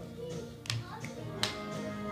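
Hand claps from a two-person clapping game: sharp palm slaps, two of them about three quarters of a second apart, over steady background music.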